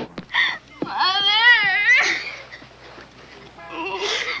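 A high-pitched crying wail, about a second long, that rises and then wavers in pitch, with a brief sob before it and a lower, shorter sob near the end.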